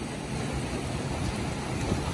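Seawater surging and foaming among shoreline boulders: a steady rush of surf.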